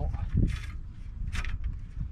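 Telescopic aluminium leg of a Fiamma F80S motorhome awning being slid out. There is a low knock about half a second in and two brief sliding hisses, over a steady rumble of wind on the microphone.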